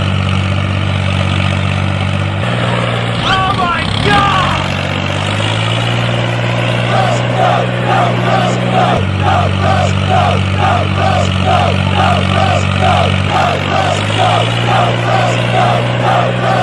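Tractor engine running steadily at a low pitch that steps up and down a few times, as the tractor labours to pull a loaded brick trolley out of mud. From about seven seconds in, a rhythmic repeated sound comes about twice a second over the engine.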